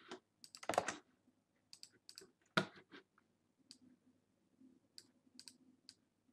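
Computer mouse clicks and keyboard key presses, a scattered run of sharp faint clicks with a couple of louder clusters, as text is copied and pasted between windows.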